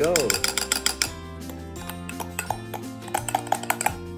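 Metal spoon clinking and scraping against a drinking glass while scooping whipped coffee foam out: a quick run of clinks in the first second and another near the end. Background music plays throughout.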